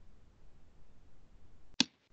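Faint low background hum from an open microphone, then a single sharp click near the end.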